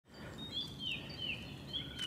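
Faint birdsong: a small songbird repeating a short, high, downward-sliding whistled note about twice a second, over a light background hiss of woodland ambience.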